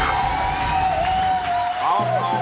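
TV show theme jingle ending on one long held high note, wavering slightly, as the title logo plays; a voice comes in near the end.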